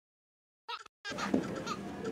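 A short, wavering vocal sound from a person, about three-quarters of a second in, after silence. Then room noise with faint voice sounds.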